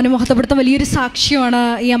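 Speech only: a woman speaking steadily into a microphone, in Malayalam.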